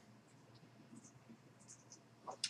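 Near silence: room tone, with a few faint ticks.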